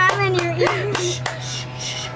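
Wordless vocalising close to the microphone, with sharp clicks and rustling from hands handling hair, over a steady low hum. Near the end it gives way to short hissy rustles.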